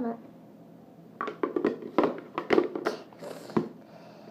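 A child's voice speaking quietly and indistinctly in short bits, starting about a second in and stopping just before the end.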